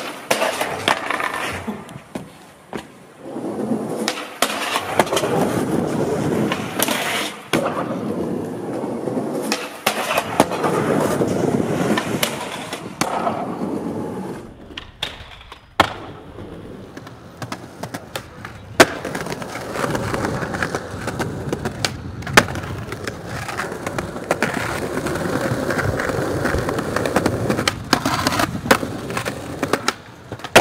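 Skateboard wheels rolling over concrete and stone pavement in long stretches, broken by sharp cracks of the board's tail popping and landing several times. The loudest cracks come in the second half.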